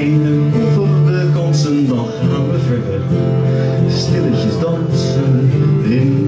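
Acoustic guitar played steadily as the accompaniment of a live song.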